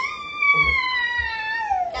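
One long rooster-style crow, held at a steady pitch and then sliding downward near the end.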